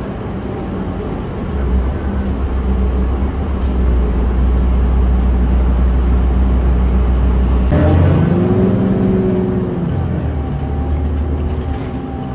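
City bus engine and drivetrain running while the bus drives, heard from inside the cabin as a steady low drone. About two-thirds of the way through the drone changes, and a tone dips and then rises again as the bus changes speed.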